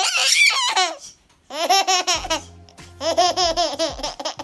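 A nine-month-old baby laughing in three bursts of quick, repeated giggles, each under a second long, with short pauses between.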